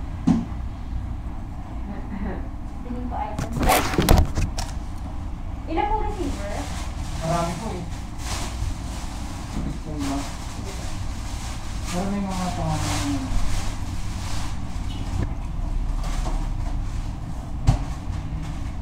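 Indistinct, low-level talk between two people at a service counter over a steady low room hum, with a brief loud clatter about four seconds in.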